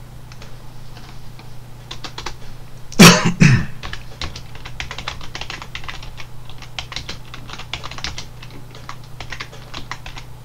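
Typing on a computer keyboard: a run of quick keystrokes. About three seconds in comes one loud two-part burst, the loudest thing heard. A low steady hum runs underneath.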